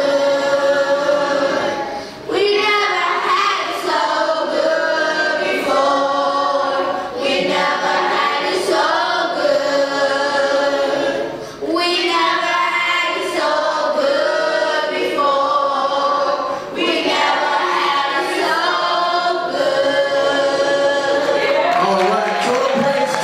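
Children's choir singing a cappella, in phrases with short breaks between them.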